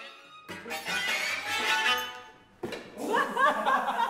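String quartet playing: a dense passage of bowed strings starts about half a second in, breaks off briefly, then a second phrase follows with sliding pitches.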